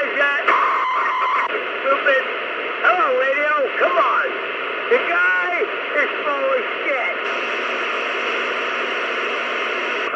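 CB radio receiver playing distorted, unintelligible voices through heavy static, with a steady buzzing tone for about a second shortly after the start. The voices stop about seven seconds in, leaving steady open-channel hiss.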